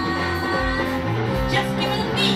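Live rock band playing: electric guitar and electric bass over a steady beat, with a woman singing into a microphone.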